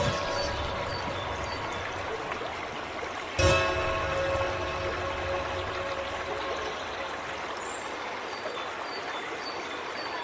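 Soft piano music over the steady trickle of a bamboo water fountain, with a new chord struck about three and a half seconds in.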